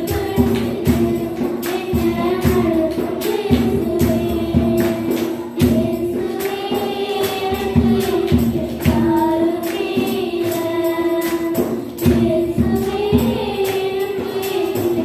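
Two young girls singing a Tamil Christian worship song together into microphones, over musical accompaniment with a steady beat.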